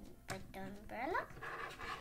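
A young girl's voice making wordless play sounds, with a pitch that slides sharply upward about a second in, over background music.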